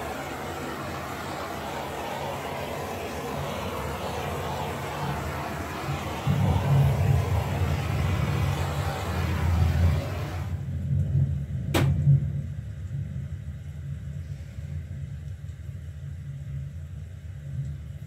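Handheld torch flame hissing steadily as it is passed over wet acrylic paint to pop surface bubbles; the hiss cuts off suddenly a little past halfway. A low rumble runs underneath from about a third of the way in, with a single click soon after the hiss stops.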